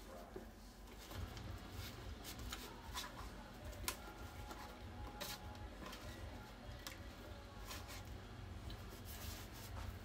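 Faint small clicks and scrapes of a metal fork against a plate and a glass baking dish as apple pie is cut and eaten, over a low steady hum.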